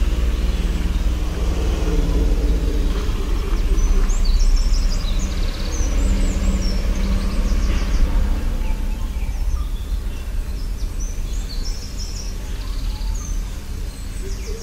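Small birds chirping and trilling, many short calls, over a loud steady low rumble.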